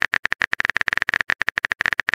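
Texting-app typing sound effect: a rapid run of short, bright keyboard-like clicks, about ten a second.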